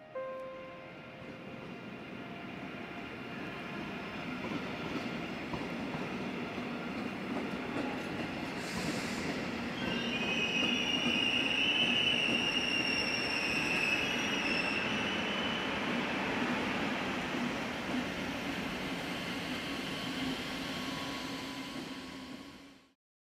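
Train running over the tracks, heard from on board, with a steady rumble that builds up over the first half. From about ten seconds in, the wheels squeal high for several seconds.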